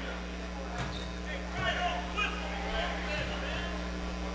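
Faint crowd chatter from spectators in a gymnasium, over a steady electrical hum.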